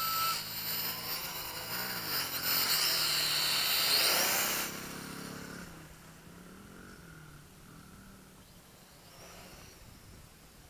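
MJX X400 mini quadcopter's motors and propellers whining, the pitch rising and falling with the throttle. Loud for the first four or five seconds, then fading to faint as the drone climbs away.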